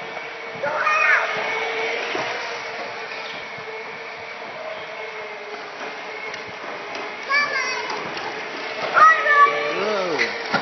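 Steady whine of a child's Razor electric scooter motor running as it rolls across concrete. High-pitched children's shouts break in about a second in and twice near the end.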